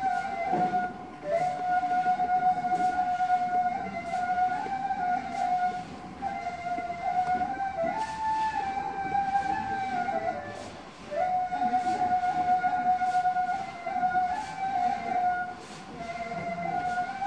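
Sufi music for the whirling dance: a ney reed flute plays a slow melody in long held notes that step up and down, over a steady soft percussion beat of about two strokes a second.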